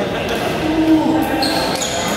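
Badminton play on an indoor court: shoes squeaking on the court floor and shuttlecock hits, with voices in the background.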